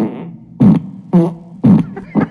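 Recorded fart sound effects played by Amazon's Alexa through an Echo Show's speaker: a run of four short, buzzy farts about half a second apart.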